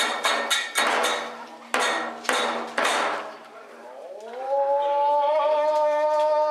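Kagura accompaniment: sharp, ringing percussion strikes at about four a second slow to a few separate strikes and die away, then near the end a held note glides up and settles on a steady pitch as the next passage begins.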